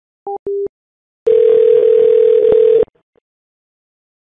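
Telephone line tones heard over the phone: two short beeps, then a steady single tone lasting about a second and a half that cuts off suddenly.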